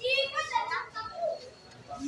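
Children's voices talking and calling out, loudest in the first half second, then quieter chatter.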